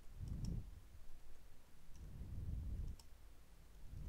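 Computer keyboard keys clicking a few times as text is typed, over a dull low rumble that comes in two stretches.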